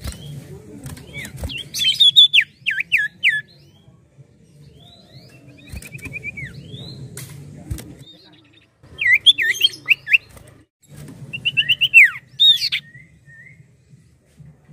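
Common iora singing in bursts: four short phrases of quick, looping whistles, one of them a brief even trill, with a few sharp clicks between phrases.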